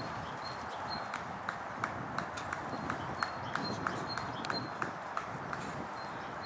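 A runner's footfalls on the cross-country course, an even run of short knocks about three a second that starts about a second in and stops near the end.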